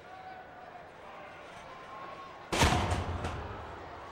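A wrestler's body hitting the ring about two and a half seconds in: one sudden loud slam with a low resonance from the ring fading over about a second, and a smaller second thud just after. Scattered shouts from the arena crowd come before it.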